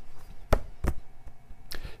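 Two sharp knocks about a third of a second apart, then a fainter one near the end.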